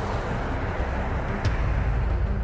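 Car running along a road, heard from inside the cabin through the dashcam: a steady low engine and road rumble, with a single short tick about one and a half seconds in.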